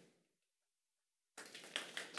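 The room sound of the podium microphone cuts to dead silence for about a second, as the microphone feed is muted between speakers. About a second and a half in it comes back with rustling and small knocks from papers being handled at the podium microphone.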